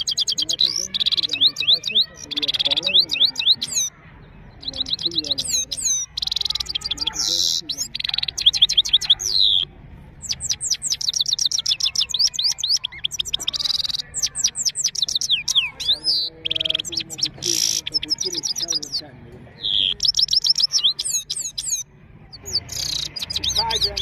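Himalayan goldfinch singing: long phrases of rapid, high, twittering notes, each lasting a few seconds, with short pauses between them.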